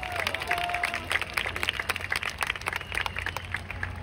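Large crowd applauding: many hands clapping densely and irregularly, in answer to a call for the warmest applause.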